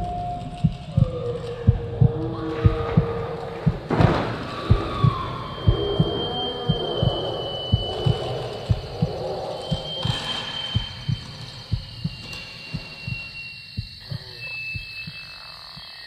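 Spooky Halloween sound-effects track with a regular heartbeat thumping about twice a second, fading toward the end, under drawn-out eerie tones that slide down in pitch and later whistle high.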